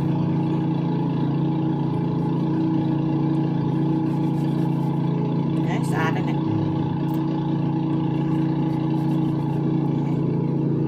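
A steady motor hum holding several fixed pitches, with a brief wavering higher sound about six seconds in.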